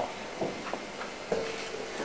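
A pause in speech: steady low hiss of the hall and its sound system, with a few faint short sounds.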